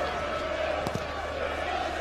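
Football stadium crowd noise heard through a TV broadcast: a steady hum of many voices, with one short sharp knock about a second in.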